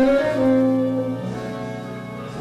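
Big band horn section (saxophones and brass) playing sustained chords in a slow jazz ballad. A louder chord comes in right at the start and holds for about a second, then the horns move on to softer chords.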